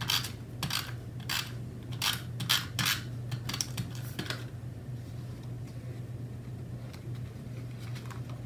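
Paper craft pieces and a tape runner handled on a tabletop: a quick run of about nine short, crisp clicks and scrapes over the first four seconds or so, then only a low steady hum.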